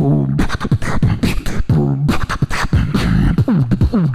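Live beatboxing into a handheld microphone: a fast rhythm of sharp percussive clicks and hits over hummed bass tones that bend in pitch, with a run of falling glides near the end.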